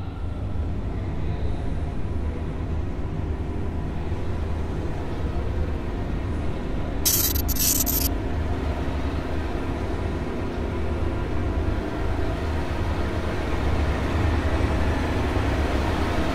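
Low, rumbling drone of a horror-film sound score that builds slowly, with a short burst of high, static-like hiss about seven seconds in.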